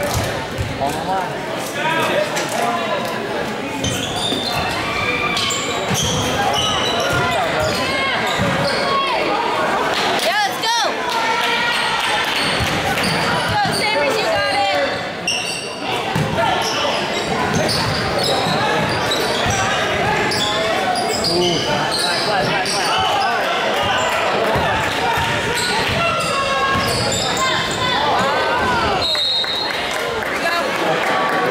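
Live basketball game in a school gym: a basketball bouncing on the hardwood court amid indistinct spectator and player voices, all echoing in the large hall.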